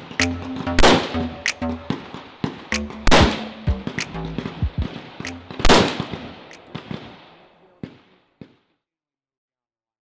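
AR-15 carbine shots fired singly, the loudest a couple of seconds apart, over background music with a steady bass line. The sound cuts off abruptly about eight and a half seconds in.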